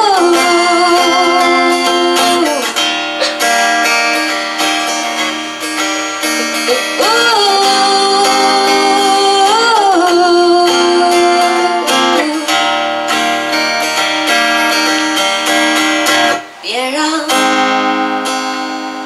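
A woman singing long held notes that bend into pitch, over a strummed acoustic guitar.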